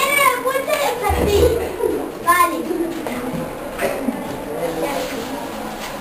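Indistinct chatter of several young children's voices, with a higher-pitched child's voice standing out at the start and again a little after two seconds.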